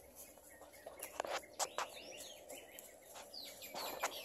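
Faint bird chirps: short, quick calls that bend up and down in pitch, about two seconds in and again near the end. A few scattered sharp clicks come in just before them.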